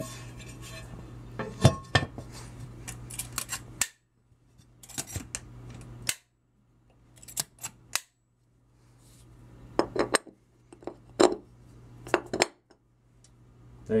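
Aluminium lid of an oil centrifuge being set on, turned and locked down, then its hose fitting attached: a run of sharp, irregular metallic clicks, knocks and clinks.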